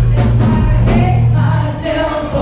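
Live rock band playing loudly, with singing over a steady bass.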